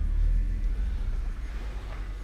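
Low, uneven rumble on the microphone of a handheld camera, from handling noise as the camera is moved around.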